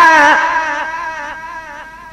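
Chanted Arabic religious verse: a long held note breaks off and the chanting voices trail away, fading steadily over about two seconds between lines.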